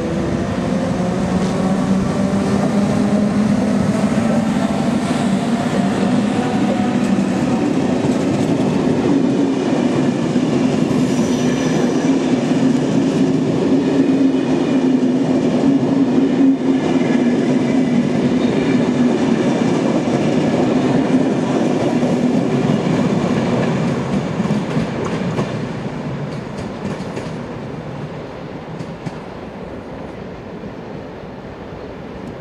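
SNCB class 21 electric locomotive and its M4 passenger coaches running into the station and passing close by. A whine falls in pitch over the first several seconds as the train slows, then a steady hum and rolling wheel noise from the coaches go by, fading over the last few seconds.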